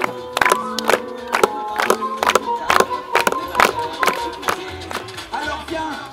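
Music with a sharp percussive beat, about two strikes a second, over held steady notes; a singing voice comes in near the end.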